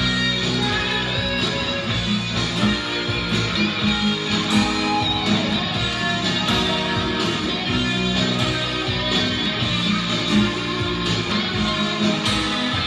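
Guitar music: a guitar playing continuously, with no break.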